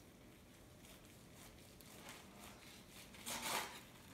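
Large serrated knife sawing slowly through a roasted chuck roast, faint and irregular. A brief, louder noisy rustle comes near the end.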